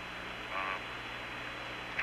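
Steady hiss and low hum of the Skylab space-to-ground radio link during a pause in the astronaut's speech, with a brief hesitant "um" about half a second in.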